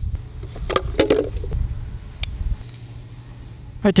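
Handling of a plastic Ortho Dial N Spray hose-end sprayer: a few light plastic clicks and clatters, bunched around a second in, with one sharp tick about two seconds in, as the sprayer head and bottle are taken apart to reach the filter screen on the pickup tube. A steady low rumble runs underneath.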